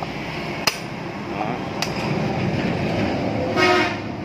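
A vehicle horn gives one short, steady beep near the end, the loudest sound here, over a steady background hum. Two sharp clicks come earlier, about a second apart.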